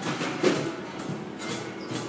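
Live music from a performer playing in the background, with a sharp knock about half a second in.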